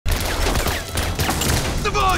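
Sustained rapid gunfire, many shots in quick succession, with a man's shouting voice coming in near the end.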